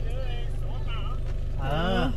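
Voices talking over the steady low rumble of a Toyota car's engine and road noise heard inside the cabin as it rolls slowly along.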